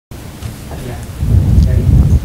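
Deep, low rumbling sound effect of a TV programme's animated intro, growing much louder a little past halfway.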